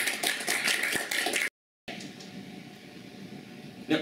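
Small audience applauding, cut off abruptly about a second and a half in. Faint room noise follows, with a single knock near the end.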